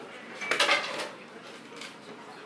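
Tableware clinking at a meal: chopsticks and ceramic dishes knocking together in a quick cluster of clinks about half a second in, with one more clink near the end.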